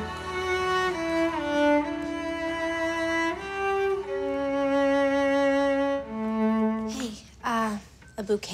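Solo cello bowing a slow melody, each note held about half a second to a second before stepping to the next, and breaking off about seven seconds in.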